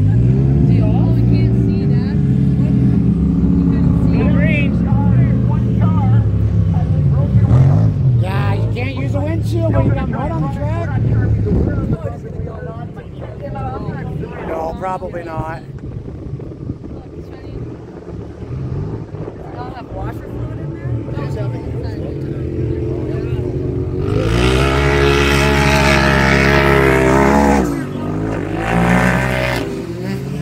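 Engines of 1000cc side-by-side UTVs racing on a dirt track, revving up and falling off as they pass. The loudest pass comes a few seconds before the end.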